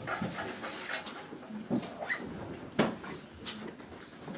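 Small-room sounds of people moving about: scattered light knocks and rustles, the sharpest a little under three seconds in, with a few brief squeaky sounds.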